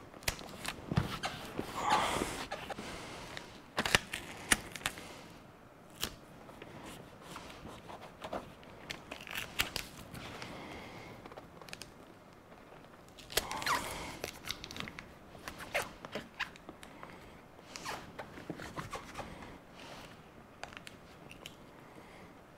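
Metal foil tape crinkling and crackling as it is handled and pressed down by hand, in irregular bursts with sharp clicks.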